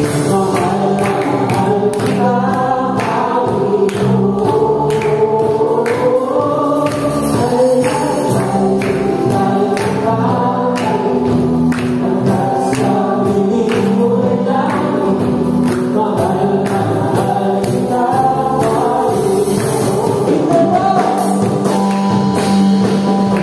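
Live worship band playing a gospel praise song: several voices singing together over a steady drum beat, bass guitar, acoustic guitar and keyboard.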